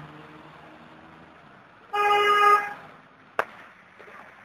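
A car horn honks once, a single held note lasting under a second about two seconds in. A sharp click follows about a second later, over low steady background noise.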